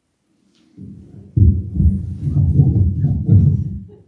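Muffled low rumbling and rubbing of a body-worn microphone against clothing as the wearer moves and bends. It starts about a second in and runs loud and irregular until just before the end.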